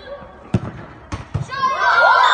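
A football thudding three times, the last two close together, followed near the end by shouting starting up.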